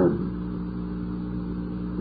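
Steady background hum of an old lecture tape recording, a low drone of several even tones with a light hiss, heard in a gap between spoken phrases.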